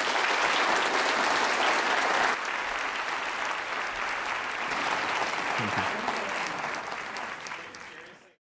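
Audience applauding, loudest for the first two seconds or so, then a little quieter and fading out near the end.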